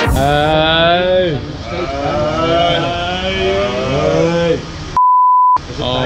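A person's drawn-out voice, without clear words, then a single steady bleep tone of about half a second near the end, with all other sound cut out under it: a censor bleep over a word.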